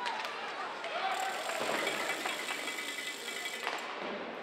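Ice hockey game sound in an arena: indistinct voices from the stands mixed with sharp clicks and knocks from sticks and puck in play.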